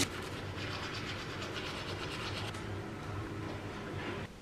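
Manual toothbrush scrubbing teeth in quick, rhythmic back-and-forth strokes that stop about two and a half seconds in.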